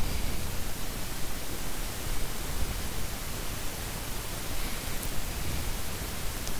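Steady hiss of the recording's background noise, with no other distinct sound.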